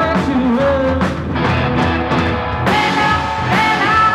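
A live rock band in a 1960s–70s style playing: electric guitars, bass, drums and keyboard, with a singer's voice gliding over the music.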